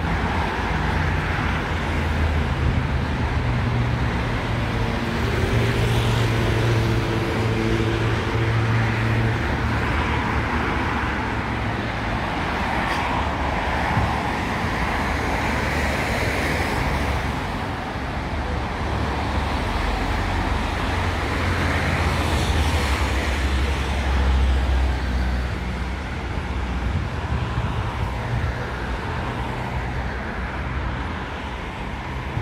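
Road traffic on a busy multi-lane street: cars passing one after another in a steady wash of tyre and engine noise, with a low engine hum in the first ten seconds or so.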